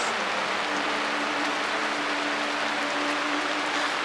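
Steady, even hiss of rain falling on a tarp shelter.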